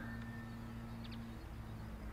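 Quiet outdoor background: a steady low hum that fades out partway through, with a brief faint high chirp about a second in.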